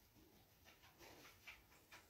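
Near silence: room tone, with a couple of very faint small clicks about midway.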